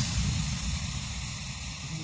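A white-noise hiss in an electronic dance track, fading slowly in a breakdown right after the build-up cuts off.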